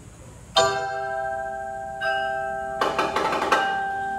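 Mallet keyboard percussion ensemble playing: a chord struck about half a second in that rings on with several held notes, a second chord about two seconds in, then a quick flurry of mallet strokes near the end.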